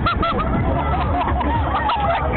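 Riders' short, high-pitched cries in quick succession, each rising and falling in pitch, over a steady low rumble.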